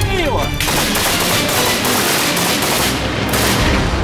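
Automatic gunfire from a belt-fed machine gun: a rapid, sustained string of shots starting about half a second in and running on without a break.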